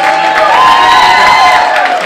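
A single voice holds one long, loud note that rises a little and then falls, over audience cheering.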